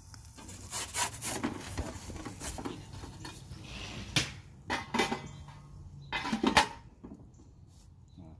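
Thin aluminium pizza peel scraping and knocking against the floor and mouth of a wood-pellet pizza oven as it is slid under a pizza and drawn out. Several sharp scrapes and clacks, the loudest a little after six seconds in.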